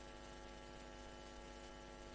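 Faint, steady electrical hum made of many evenly spaced tones, with a light hiss.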